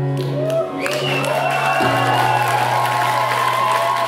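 A post-rock band plays live, holding a sustained low keyboard chord. Over it, the audience cheers, with a long wavering whoop from the crowd.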